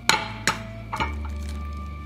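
An egg being cracked against the rim of a ceramic mug: three sharp taps within the first second, the first the loudest.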